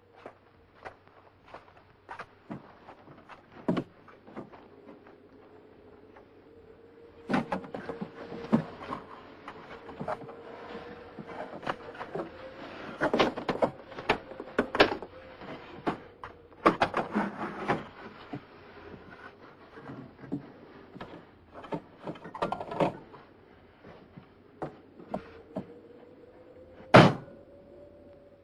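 Objects being handled and moved about on the wooden shelves of a cupboard: a run of knocks, bumps and clatters, sparse at first and busiest in the middle stretch. A faint steady tone runs underneath.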